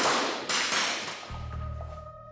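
Two loud sharp bangs about half a second apart, each fading away over about a second, then a low steady droning music bed from a little past the middle.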